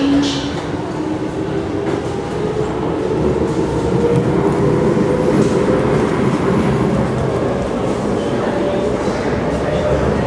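Interior of an SMRT C751B metro train pulling away from a station: a steady rumble of wheels and car body, with a faint motor whine that climbs slowly in pitch as the train gathers speed. It grows a little louder about four seconds in.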